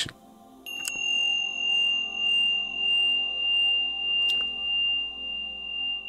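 A high, steady ringing tone comes in about half a second in and swells and fades about one and a half times a second, over a soft ambient music bed. Two faint clicks are heard, one just after the tone starts and one a little past four seconds.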